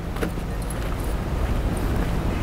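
Steady low outdoor rumble that grows slightly louder, with a faint click near the start.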